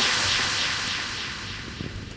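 A jet airliner engine sample closing out a drum and bass track played from vinyl: a steady, noisy rush that fades away over the two seconds, with a few faint clicks near the end.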